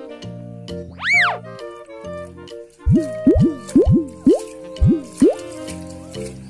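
Children's background music with cartoon sound effects laid over it: a whistle that slides up and back down about a second in, then a quick run of about eight sliding 'boing' sounds from the middle to near the end.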